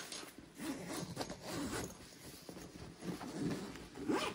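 The zipper of a Bagail fabric compression packing cube being unzipped by hand in several uneven rasping pulls.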